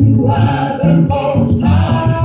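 Live gospel worship song: voices singing together over an electric bass guitar, with short breaks between sung phrases.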